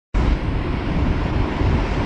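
Steady hiss with a low rumble underneath, starting abruptly just after the start: the background noise of an old lecture recording before the talk begins.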